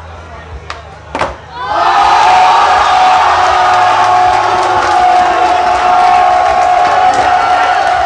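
Skateboard clacking on a hard floor twice in the first second and a half as a trick is popped and landed, then a crowd breaking into loud cheering and shouting.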